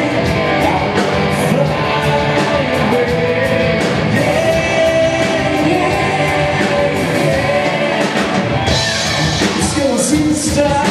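Live rock band playing a song: electric guitars and drums under a sung lead vocal, steady and loud throughout.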